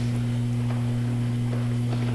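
Steady low electrical hum, two low tones held level, over faint room noise.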